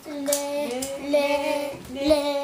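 Violin bowed by a first-time child player: two long, slightly scratchy strokes on one note near D (the open D string), its pitch wavering briefly between them.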